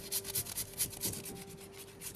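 Raw carrot being grated on a flat stainless-steel hand grater: quick rasping strokes, about five a second, growing fainter near the end.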